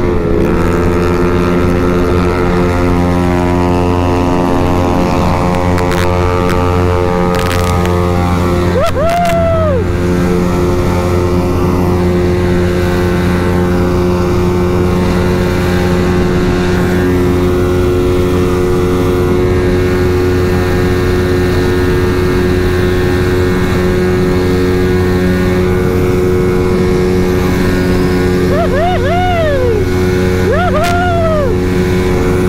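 Honda Vario scooter's single-cylinder engine held at full throttle at high speed, a loud, steady drone that barely changes pitch, with wind rush on the microphone. A brief rising-and-falling tone cuts in about nine seconds in and again near the end.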